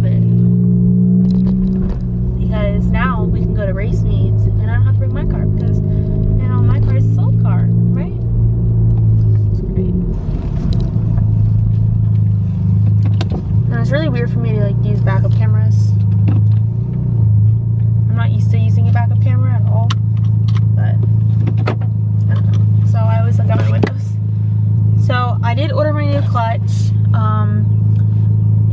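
Engine of a big-turbo MK7 Volkswagen GTI (2.0-litre turbo four-cylinder) running steadily at idle, heard inside the cabin as a constant low drone.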